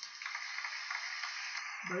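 Steady crinkly rustling of plastic as gloved hands sleeve a baseball card. It stops shortly before the end.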